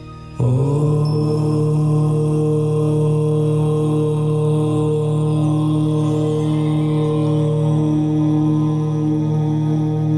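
A long, steady chanted "Om" begins about half a second in and is held unbroken at one pitch, over soft ambient meditation music.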